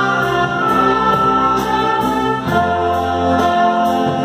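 Amateur concert band of flutes, clarinets, saxophones and brass playing a slow piece in held chords, the bass and harmony changing about two and a half seconds in.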